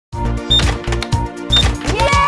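Music with a steady low beat under sharp mechanical clacks about every half second, like flip-clock cards turning over, with two short high dings. A ringing chime starts right at the end.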